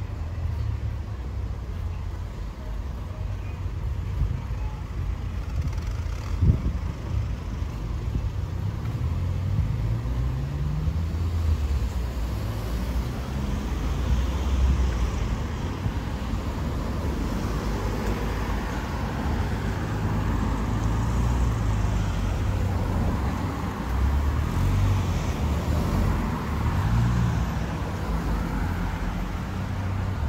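Suburban street traffic: cars driving past with a steady low rumble, one engine rising in pitch as it accelerates about ten seconds in, and tyre noise building through the second half. A single sharp knock about six seconds in.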